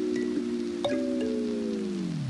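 Lo-fi hip hop music: sustained, chime-like keyboard chords with light clicks. A new chord is struck about a second in, and near the end all its notes begin to sag downward in pitch together, like a tape-stop effect winding the track down.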